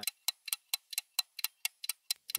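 Ticking sound effect: an even, quick run of sharp clicks, about four to five a second, used as a 'time passes' cue.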